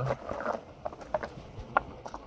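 A brief rustle followed by a few small, sharp clicks of objects handled on a table as the next letter is drawn, the last click, near the end, the loudest.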